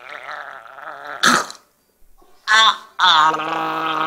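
A woman's voice making a gargling, gurgling noise in her throat with her mouth held open, as if taking pretend medicine. Two short, louder vocal sounds come about a second and two and a half seconds in, followed by a long steady held note.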